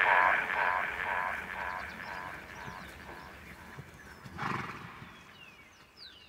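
A horse whinnying in a long, wavering call that fades away over the first few seconds, then a short blowing burst about four and a half seconds in. Faint bird chirps near the end.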